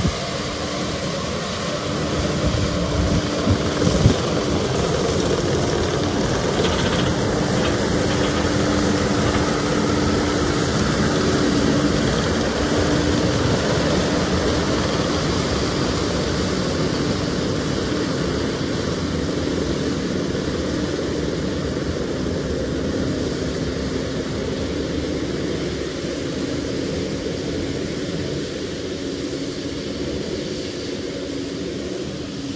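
Kubota SVL97-2 compact track loader's diesel engine running steadily, its pitch wavering slightly, with a couple of sharp knocks about four seconds in.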